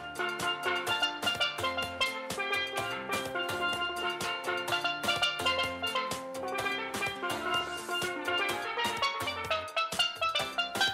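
A steelpan played with sticks: a quick melody of struck, ringing metallic notes, over a low bass line and drum accompaniment.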